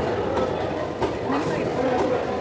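A cleaver chopping tuna on a wooden chopping block, a few sharp knocks over steady market chatter.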